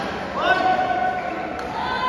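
Sports shoes squeaking on an indoor court floor: a squeak that rises about half a second in and holds for about a second, then another near the end, over players' voices in a large hall.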